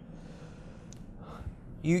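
A pause in a man's speech filled by a faint breath drawn in, with a small mouth click. He starts speaking again near the end.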